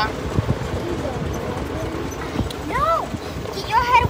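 Golf cart riding over rough ground: a steady rumble of running noise and wind with many small rattling knocks. A voice calls out with a rising-then-falling pitch about three seconds in, and speech starts near the end.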